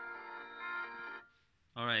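Music with sustained chords playing from the Nokia 8.1 smartphone's single loudspeaker, cutting off abruptly a little past a second in. A man's voice begins just before the end.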